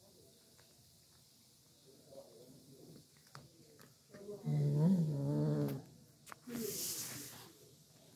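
Kitten growling while eating a piece of chicken. A long, low, steady growl comes about halfway through, followed by a shorter, breathier one about a second later.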